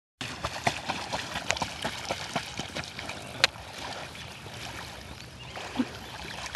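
Shallow lake water splashing around a wading person and a paddling pug: a run of small splashes and drips, with one sharper splash about three and a half seconds in, then quieter lapping.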